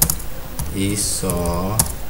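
Typing on a computer keyboard: scattered key clicks as words are typed. A voice draws out two syllables between the clicks.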